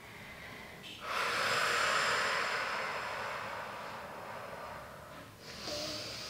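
A woman's long, audible exhale, starting about a second in and fading gradually over about four seconds as she rounds her spine in a cat stretch; a shorter, quieter breath follows near the end.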